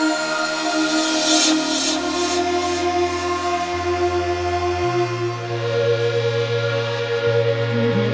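Future garage electronic music: held synth chords with a short burst of hiss about a second and a half in, then a deep bass line that comes in and changes note a few times.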